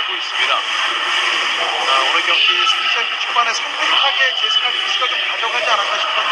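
Indistinct, overlapping voices in compressed broadcast audio, with no single clear speaker.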